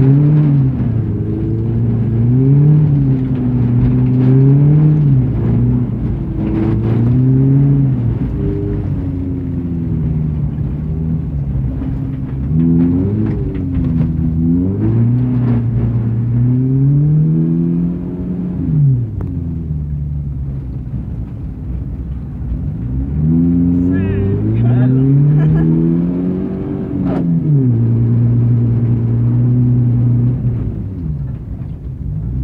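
BMW 318 engine heard from inside the cabin, revving up and falling back again and again as the throttle is applied and lifted.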